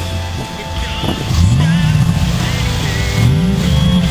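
Ford 5.4-litre V8 of a 2007 F-150 Harley-Davidson Edition revved twice through its dual exhaust tips, starting about a second in. Each rev rises and falls in about half a second, over rock music.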